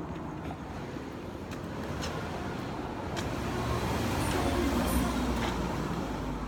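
A car approaching on the road, its engine and tyre noise growing steadily louder until about five seconds in, then easing slightly as it goes by.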